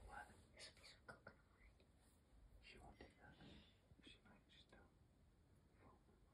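Near silence, with faint whispering and a few soft clicks and rustles.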